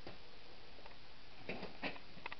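Footsteps scuffing on a debris-strewn floor: a soft click, then a few short scrapes and clicks near the end, over a steady background hiss.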